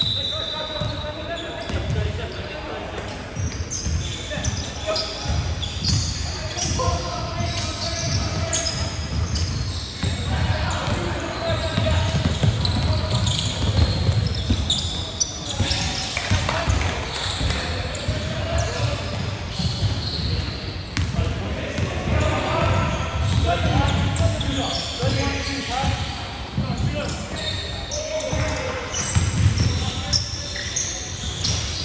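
A basketball being dribbled on a hardwood gym court during play, with sneakers squeaking and players' indistinct calls, all echoing in a large hall.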